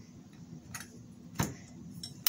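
A metal bracket being fitted onto a prop's pole: a faint scrape, then one sharp metallic click about a second and a half in.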